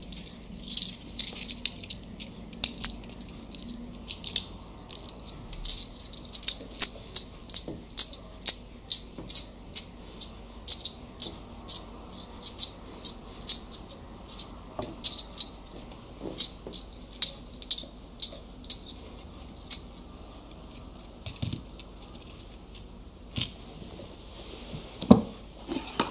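Close-miked ASMR tapping: a long run of light, crisp taps or clicks, about two to three a second after the first few seconds.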